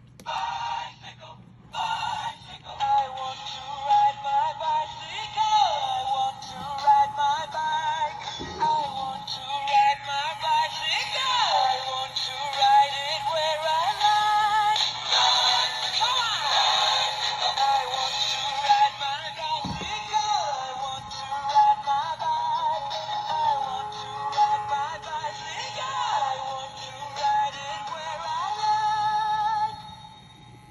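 Battery-powered plush bunny-on-a-tricycle toy playing its electronic sung song through a small speaker, running on low batteries. The song stutters for the first couple of seconds, then plays continuously over a steady low hum.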